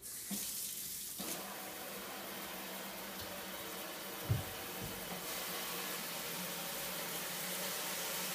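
Kitchen sink faucet turned on, water running steadily into the sink, with the flow getting stronger about a second in. A brief low thump comes about halfway through.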